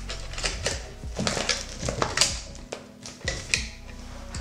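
A map in a clear plastic sleeve crinkling as it is pulled out of two metal clipboard clips, with a string of sharp clicks from the clips and panel, the loudest about two seconds in and near the end.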